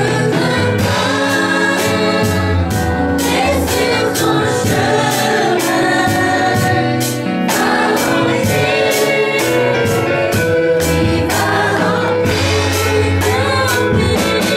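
Children's choir singing a gospel song together into microphones, over instrumental accompaniment with sustained bass notes and a steady beat.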